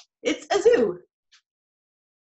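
A woman's short wordless vocal sound: a breathy start, then a voiced sound that falls in pitch, lasting under a second near the start.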